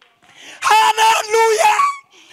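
A man's voice raised to a high, strained shout in impassioned preaching, coming through the hall's microphone and speakers; it starts about half a second in, in a few held, broken phrases.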